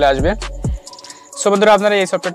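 A voice talking over background music, breaking off briefly about a second in.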